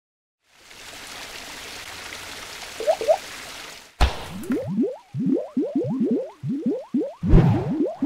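Animated logo sound effects: a hissing whoosh builds for about three seconds, with two quick rising chirps near its end, then a sharp hit about four seconds in, followed by a rapid run of short rising bloops like liquid splats, about three a second.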